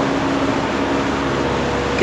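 Steady hiss with a faint low hum, room noise with no speech.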